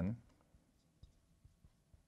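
Faint, scattered ticks of a marker pen tapping and lifting on a glass lightboard as a word is written, about five small clicks over two seconds.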